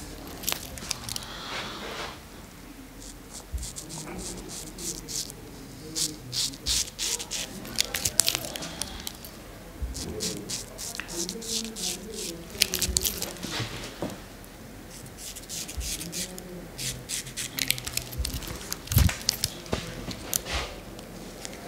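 Straight razor blade scraping through lathered beard stubble in runs of short strokes, each a quick crisp crackle.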